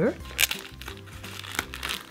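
Plastic sheet-mask packaging crinkling as it is pulled open, with a sharp rip about half a second in and smaller crackles later.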